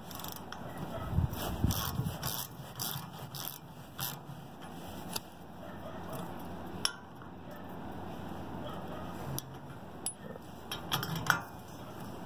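Scattered metallic clinks and scrapes of a wrench and socket handled against the steel tie-down anchor head, as the strap's tension bolt is worked loose. The clinks cluster in the first few seconds and come again near the end.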